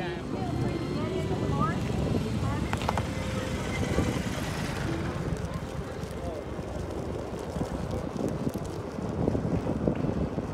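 Wind rushing over the microphone and tyre rumble from a Ninebot electric scooter riding along an asphalt street, with faint voices of people nearby in the first couple of seconds.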